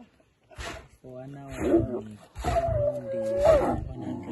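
A male lion and a lioness growling at each other in two drawn-out growls, starting about a second in: the lioness rebuffing the male's advances.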